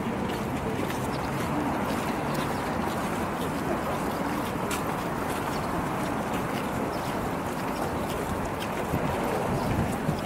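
Steady outdoor street noise while walking, with faint footsteps on stone paving.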